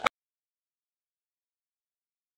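Silence: the sound track cuts out just after the last word of the race commentary.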